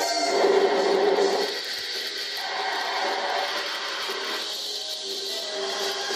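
Electric guitar playing a lead line of sustained notes over backing music, in an instrumental break between sung verses.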